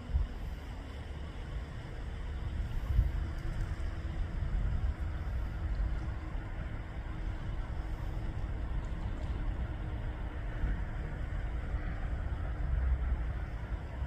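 Steady low outdoor rumble with a faint hiss and no distinct events.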